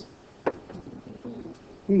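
A single sharp tap about half a second in, a pen striking the writing surface while the teacher writes "= e", followed by a faint low murmur of voice.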